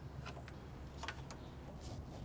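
A few faint metallic clicks of a nut driver and carburetor parts being handled as the carburetor is bolted back onto a small engine, over a low steady hum.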